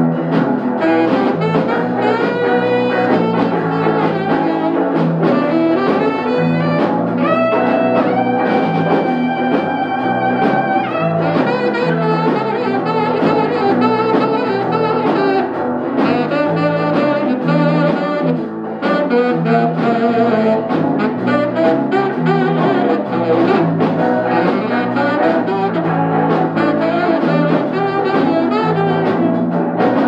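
Live band playing an instrumental passage: a lead line on electric guitar with bending and held notes, over bass guitar and drum kit.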